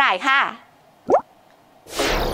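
A short, quickly rising 'bloop' editing sound effect about a second in, then, near the end, the sudden onset of a whoosh transition effect.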